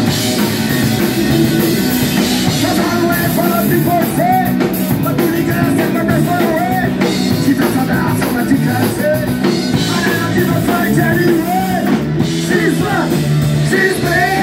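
Live rock band playing loud: electric guitar, bass guitar and drum kit, with a singer coming in on microphone about four seconds in.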